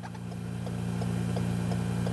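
Steady low hum inside a stationary car's cabin, with faint light ticks about three times a second.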